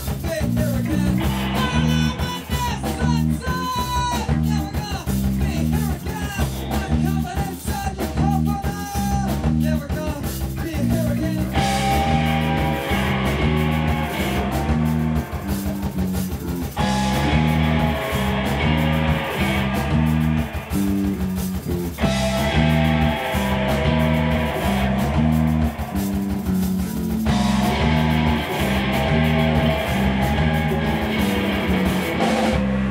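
Live rock band playing loudly: distorted electric guitars over bass and drums, with a repeating bass riff. About twelve seconds in the guitars thicken into a dense, noisy wall of sound that alternates with sparser passages every five seconds or so.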